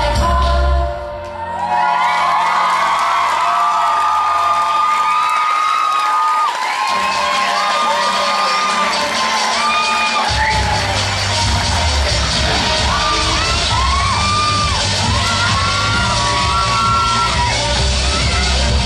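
A pop backing track ends about a second in, and an audience breaks into cheering with many high whoops and screams. A bass-heavy music track starts up under the cheering about ten seconds in.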